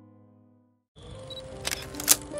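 Soft piano background music fades out into a moment of silence. About a second in, new background music starts with a hiss, and a quick cluster of sharp clicks comes near the end, like a camera-shutter transition effect.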